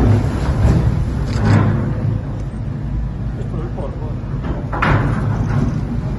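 Excavator engine running with a steady low rumble inside the tunnel as it knocks down the rock and earth wall between the two tunnel bores, with rubble falling.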